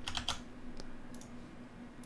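A few faint computer keyboard keystrokes, scattered clicks mostly in the first second.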